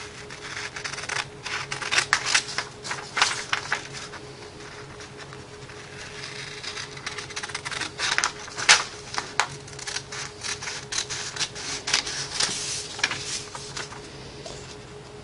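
Scissors cutting through a sheet of printer paper in runs of quick snips with short pauses between them.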